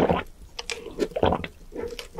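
Close-miked drinking through a straw from a large paper cup: wet sucking and several gulps of swallowing, coming about every half second.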